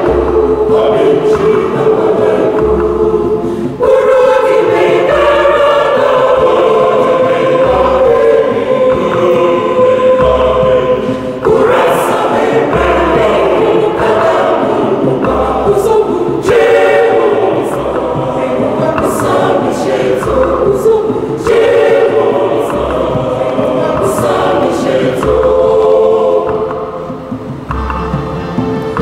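A mixed church choir singing a communion song in several parts, with a regular low percussion beat underneath. The singing grows a little softer near the end.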